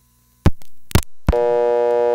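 Two sharp clicks about half a second apart, then, about a second and a half in, steady dial tone comes on from a No. 1 Crossbar originating sender: the old-style Bell System dial tone, a buzzy many-toned hum.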